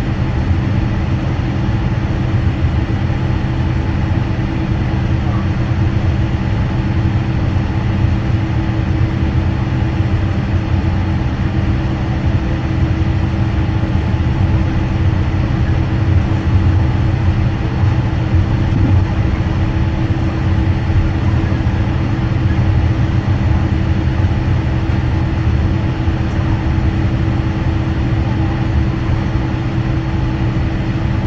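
Airliner taxiing slowly on the ground, heard from inside the cabin: a steady jet-engine drone and low rolling rumble with a few constant humming tones, unchanging throughout.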